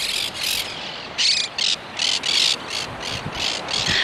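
Footsteps crunching in dry sand, a quick series of short scrunches at walking pace, about two to three a second.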